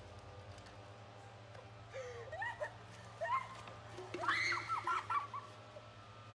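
Quiet background music with a steady low hum. About two seconds in, girls' voices break in with short, high, gliding shrieks and cries, loudest around four seconds in, and they die away near the end.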